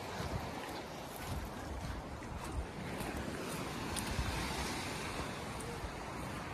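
Steady wind noise on the microphone, with small waves washing on a sandy beach.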